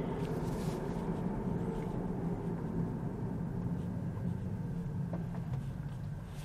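Steady road and tyre noise heard inside a Tesla Model 3's cabin as the car slows from about 50 km/h toward a stop at a red light, a low hum that eases slightly near the end.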